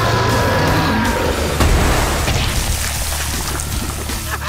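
Cartoon soundtrack: dramatic music over a heavy low rumble, with a long, slightly falling cry in the first second and a crash about a second and a half in, as the monster Plasmus rises and slime spills over the city.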